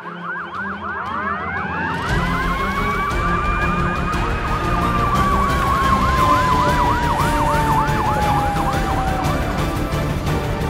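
Fire engine sirens sounding together: a fast yelp sweeping up and down about three times a second, over a wail that rises, holds, and then slowly falls. A low rumble joins about two seconds in.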